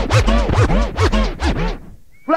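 A DJ scratching a record over an old skool hardcore track: the sample swoops up and down in quick back-and-forth strokes over a deep bass line. The music drops out near the end.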